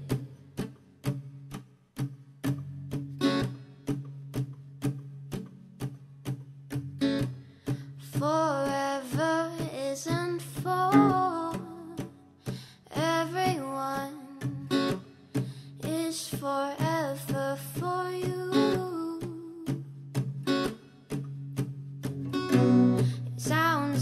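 Acoustic guitar strummed in a steady rhythm, about two strokes a second, with a woman's wordless humming of the melody over it from about eight seconds in until about twenty seconds in. Her voice comes in again near the end.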